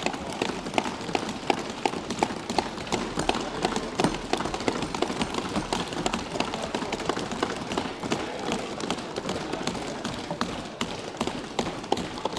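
Many members of parliament thumping their wooden desks in applause: a dense, continuous patter of hand thumps that greets a budget announcement.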